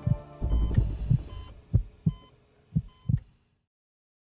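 Intro music sting under a logo animation: a fading music bed gives way to a series of low thumps, some in close pairs, with short high tones over them. It cuts off abruptly about three and a half seconds in.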